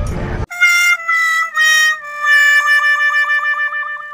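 Comedic "sad trombone" sound effect: three short notes stepping downward, then a long lower note with a wobble, marking a letdown. It comes in abruptly, cutting off a brief burst of street noise.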